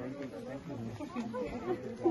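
Speech only: people talking at a moderate level, no distinct non-speech sound.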